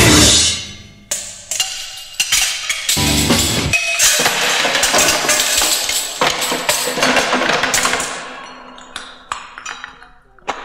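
A loud rock band passage breaks off about half a second in. It gives way to loose, irregular drum and percussion hits with light clinks, which thin out and fade over the last two seconds.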